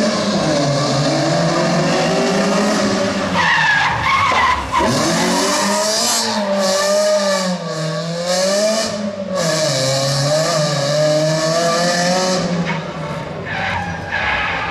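Rally car engine revving hard and easing off again and again as the car works through a tight cone-marked turn on tarmac, with tyre squeal and skidding. The revs drop sharply about five seconds in, then rise and fall in several swells before fading near the end.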